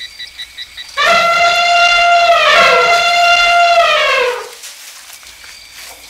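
Elephant trumpeting: one loud call starting about a second in and lasting about three and a half seconds, with the pitch sliding down as it fades.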